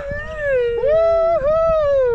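A high voice whooping a long, wavering "woo", its pitch swooping up and down: a cry of delight on a swing.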